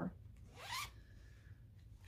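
A zipper pulled once: one short rasp rising in pitch, about half a second in.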